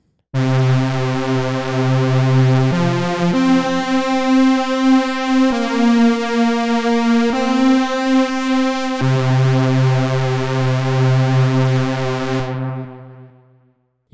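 Moog Mother-32 and Moog Mavis analog synthesizers sounding together as one buzzy pulse-wave voice, played from the Mother-32's button keyboard. A held note steps through about six pitches without a break, then fades away near the end.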